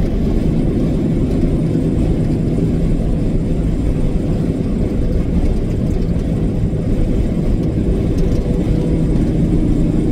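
Semi truck's diesel engine and road noise heard inside the cab while driving: a steady low drone.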